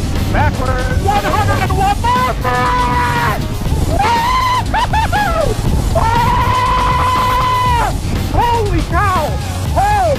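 Roller-coaster riders whooping and yelling in short rising-and-falling cries, with two long held shouts: a shorter one about two and a half seconds in and a longer one from about six to eight seconds. Under the voices runs a steady low rush of wind on the microphone.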